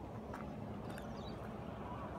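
Quiet outdoor background hiss with a couple of faint footsteps of a person walking on a road.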